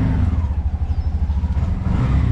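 Engine of a small motor vehicle running with a steady, low, pulsing rumble, heard from on board as it drives slowly along.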